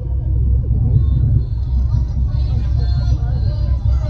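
A deep, steady low rumble starts suddenly as the light installation's fog is released, with a fainter hiss above it from about a second in.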